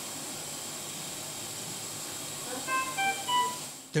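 Intensive-care room sound: a steady hiss of running ventilator and medical equipment, then, in the second half, a handful of short electronic beeps at several different pitches from the monitors or infusion pumps.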